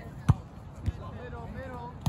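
A volleyball struck by hand twice: a loud thump, then a softer one about half a second later, with voices of players and onlookers.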